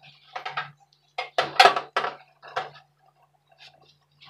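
A scouring sponge scrubbing a gas stove's metal pan-support grate covered in cleaning foam: a run of short, irregular scrapes and light metal clinks, loudest about a second and a half in and dying away in the last second.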